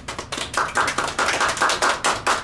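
A small group of people clapping their hands in quick, dense claps, growing louder about half a second in.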